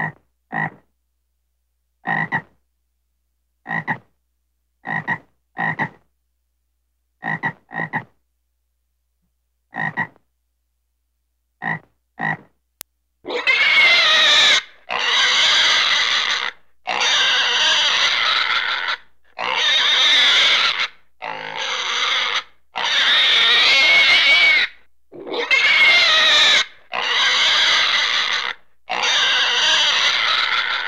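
Animal calls in two runs: first, short separate calls, often in pairs, every second or two; then, from about 13 seconds in, a run of long, loud, rough calls about a second and a half each, with short gaps between them.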